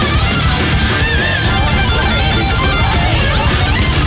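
Heavy metal music: a lead electric guitar plays long, bent, wavering notes over steady drums and bass.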